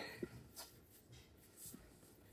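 Near silence with a few faint, soft rubs of hands kneading bread dough in a stainless steel mixing bowl.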